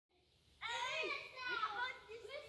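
A child's high-pitched voice calling out, starting about half a second in and carrying on with a rising and falling pitch.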